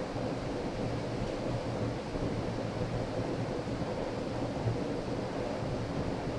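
Steady room noise of a large hall: an even hiss with a faint low hum and no distinct events.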